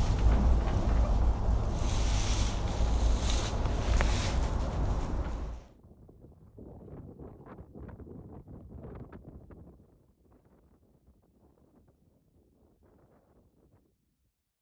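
Wind buffeting the microphone, a loud, steady rumble, which cuts off suddenly about halfway through. Faint scattered rustles and ticks follow and fade to near silence.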